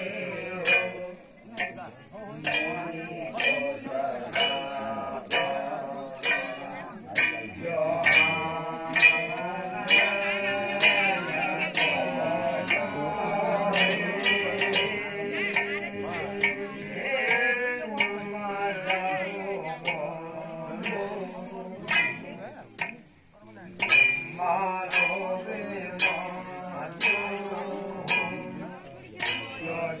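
Kumaoni jagar singing by a man into a microphone, backed by struck percussion at a steady beat of about two strikes a second. There is a brief break in the singing and beat about three quarters of the way through.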